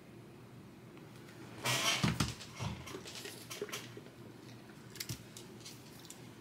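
Hands putting a phone aside and picking up a micro RC crawler chassis: after a quiet start, a rustle with a couple of soft knocks about two seconds in, then light clicks and taps of plastic and metal parts being handled.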